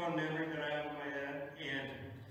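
A man's voice holding one long, steady vowel for about a second and a half, then trailing off.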